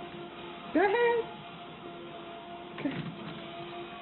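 Treadmill motor running with a steady whine as the belt moves. About a second in, a short rising voice-like call is the loudest sound, and a brief falling sweep follows near the three-second mark.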